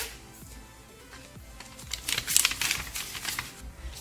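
Paper and thin card rustling and clicking as vouchers are pulled from a paper envelope, in irregular short bursts through the second half, over soft background music.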